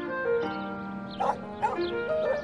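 Background music with a dog barking twice in the second half.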